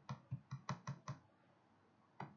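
Quick run of about six keystrokes on a computer keyboard, all within the first second or so, then they stop.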